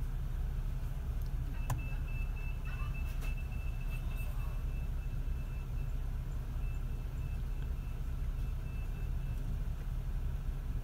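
Car engine idling, a steady low rumble heard from inside the cabin. From about a second and a half in, a faint high-pitched beep pulses on and off until near the end.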